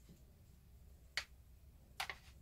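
Two short sharp clicks over near silence, the second right at the end: hard, resin-coated card parts of a prop gauntlet knocking as they are handled.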